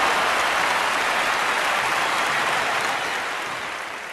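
A large audience applauding, a dense steady clatter of many hands clapping that slowly dies down toward the end.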